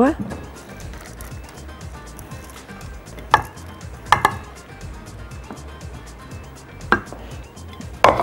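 Four short, sharp clinks of cookware as the meat-and-rice filling is tipped and scraped out of a pan into a ceramic baking dish, two of them close together, over faint background music.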